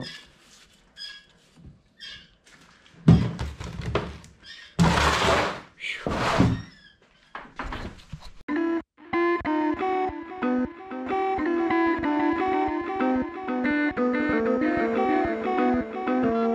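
Shop work noises: scattered knocks, a heavy thunk about three seconds in, and a few longer noisy bursts of scrubbing or scraping on a corroded engine block. About halfway in, instrumental background music starts and carries on.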